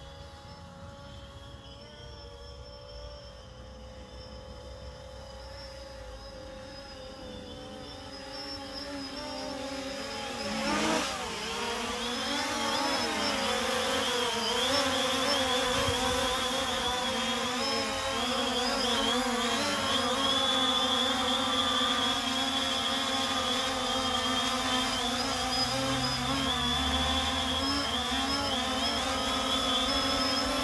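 DJI Phantom 3 Standard quadcopter in flight on carbon fiber propellers: a steady, multi-pitched motor and prop whine. It grows louder over the first dozen seconds as the drone comes closer, wavers in pitch about eleven seconds in as it manoeuvres, then holds steady as it hovers.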